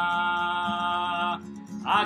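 A man singing a Hebrew psalm melody to a strummed acoustic guitar. He holds one long note until about a second and a half in, then starts a new rising phrase near the end.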